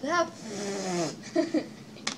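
Two children's voices breaking into laughter: a short utterance, then one long drawn-out vocal sound sliding down in pitch, then a few short laughing sounds.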